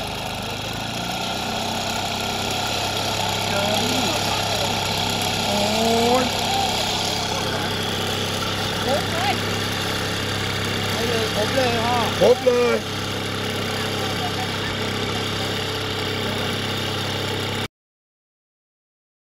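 A small engine running steadily at an even speed, with a man's short exclamations over it; the sound cuts off abruptly near the end.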